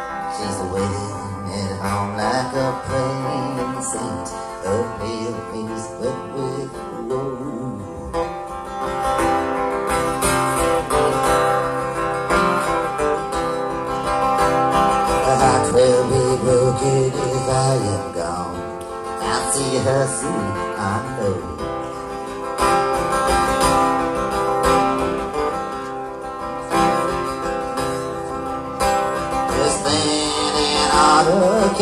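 Acoustic guitar played live, picking and strumming a folk ballad accompaniment with no words sung, as picked up by an audience microphone in the hall.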